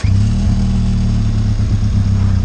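Benelli TRK 502 X's parallel-twin engine catching right at the start after a restart and settling straight into a steady idle.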